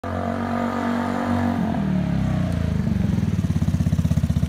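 A motorcycle engine slowing as it pulls up: its pitch drops about halfway through, then it settles into an even, rapid idle pulse.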